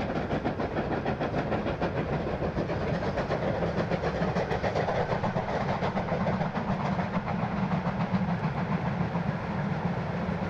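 Two GWR prairie tank steam locomotives, Nos. 5199 and 5542, double-heading a passenger train and working hard, their exhaust beats coming in a rapid, steady, overlapping chuff.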